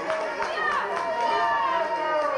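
Several voices shouting over one another at a wrestling bout, with no clear words, and one drawn-out shout in the second half.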